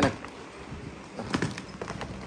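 Leather bags being handled and set down, with a few soft knocks and taps: a pair of them a little past halfway and another near the end.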